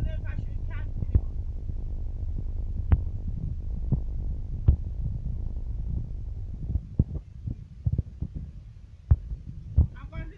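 Low, steady rumble of a vehicle's engine idling, heard from inside the cabin, easing off somewhat after about six seconds. Scattered single sharp taps sound over it.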